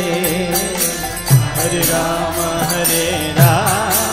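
Devotional chanting sung with instruments. A deep drum stroke falls about every two seconds over fast, regular high percussion strikes.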